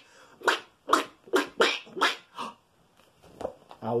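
A man's voice making a run of short, breathy animal-like noises, about two a second, an imitation acted out from a picture book. They stop about two and a half seconds in, and speech starts near the end.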